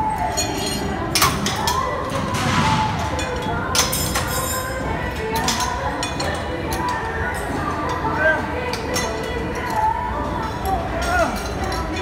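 Metal clinking from a seated cable-row machine, its chained metal handle rattling again and again with each pull, over background voices and music.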